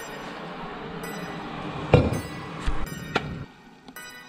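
Clinks and knocks of coffee-making containers being handled on a kitchen counter: one sharp, loud clink about halfway through and two lighter knocks soon after. They sit over a steady rushing noise that stops shortly before the end, with background music.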